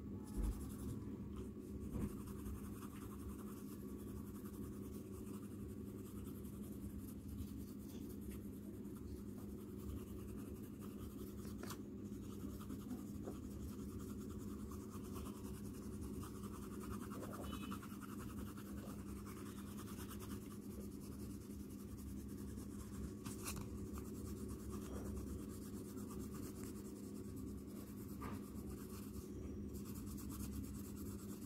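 Coloured pencil shading on paper, soft scratchy strokes, over a steady low hum. A brief bump about half a second in.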